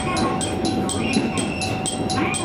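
KiHa 220 diesel railcar heard from the cab as it rolls slowly into a station platform: steady running noise from the engine and wheels, with a steady hum and a fast, even high ticking about five times a second.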